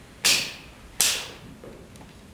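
Two sharp cracks about three-quarters of a second apart, each with a short echo dying away.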